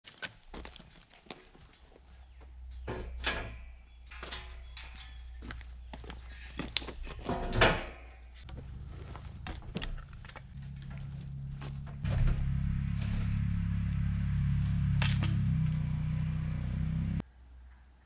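Clanks and knocks of log handling: an aluminium loading ramp set down and a cant hook working a log, with one louder knock a little before the middle. Then a steady low drone, louder from about two-thirds through, that cuts off abruptly near the end.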